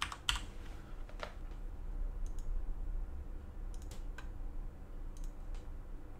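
Computer keyboard keys tapped a few at a time, scattered clicks spread through the few seconds, over a low steady hum.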